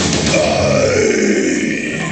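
Heavy-metal vocalist's growl sliding down in pitch over about a second. Under it the band's last chord dies away and stops a little past halfway.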